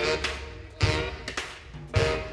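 New Orleans brass band playing live: saxophones, sousaphone, drum kit and electric guitar. Short accented horn-and-drum hits come about a second apart.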